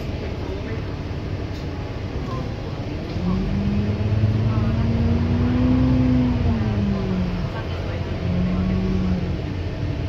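Alexander Dennis MMC bus heard from inside the passenger saloon as it drives: a low engine and driveline drone swells and rises in pitch from about three seconds in, holds, falls away around seven seconds and comes back briefly near nine, over steady road and cabin rumble.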